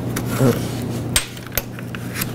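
A metal utensil cutting into a pie and knocking against its plastic pie tray: a sharp click a little over a second in and a smaller one just after, over a low steady hum.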